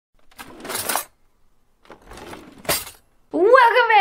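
Metal cutlery clattering in two bursts, like a handful of spoons and forks dropping, the second ending in a sharp clink. A voice starts near the end.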